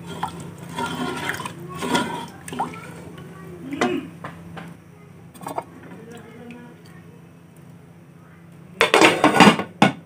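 A wooden spoon stirring chickpea curry in an aluminium pot, with small liquid sloshing sounds. About nine seconds in, the metal lid is set onto the pot with a loud clatter.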